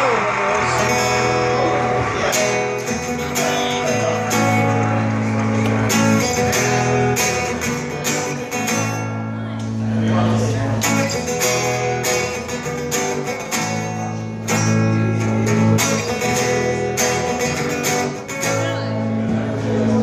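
Acoustic guitar strummed in a repeating chord progression, the instrumental introduction to a song before the vocals come in.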